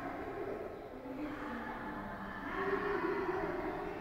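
Slow church music of held notes that change pitch every second or so, carried on the room's echo.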